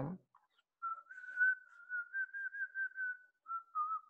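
A man whistling softly to himself: a single thin tune that wavers in small steps around one pitch, with a brief break about three and a half seconds in.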